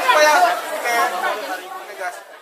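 People talking, with overlapping chatter in the background.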